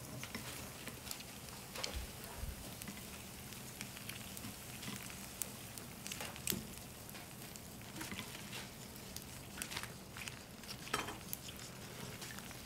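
Electric hot pot of spicy broth simmering with a soft, even bubbling hiss, broken by occasional light clicks of chopsticks and utensils against the pot and bowls.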